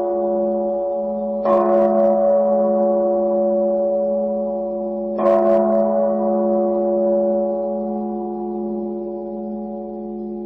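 A Buddhist bowl-type temple bell struck twice, about a second and a half in and about five seconds in. Each strike rings on in a long, many-toned hum that slowly fades, carrying over the ring of a strike made just before.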